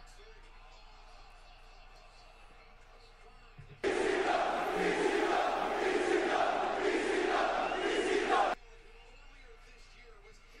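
A recorded crowd chanting, played as a short soundboard clip: it starts suddenly about four seconds in, pulses in a steady rhythm of a little under a beat and a half per second, and cuts off abruptly after about four and a half seconds.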